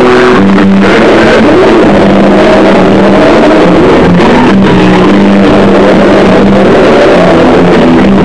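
Live noise-rock band recorded on an overloaded camera microphone right in front of the bass. Heavily distorted, clipped playing, with a held low bass note that breaks off and returns over a dense din of the other instruments.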